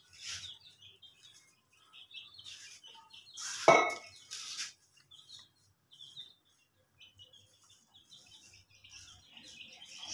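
Soft tapping and scraping of a knife blade mixing turmeric-and-mustard-oil paste on a plastic sheet over concrete, with one sharper tap near the middle. Faint bird chirps come and go throughout.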